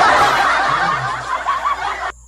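A burst of laughter that cuts off abruptly after about two seconds.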